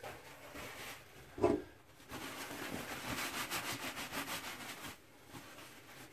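Paper towel rubbing over freshly washed eggshells to dry them, a steady run of quick rubbing strokes lasting about three seconds. Just before it, a brief vocal sound.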